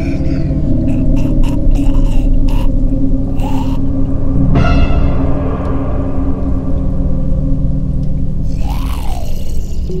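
Instrumental music: sustained low droning tones with a few short hits in the first seconds, a sweep about halfway, and a gliding tone near the end.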